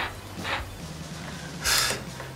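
Faint low hum of a cordless screwdriver's motor barely turning as its nearly flat battery gives out, then a short breathy exhale near the end.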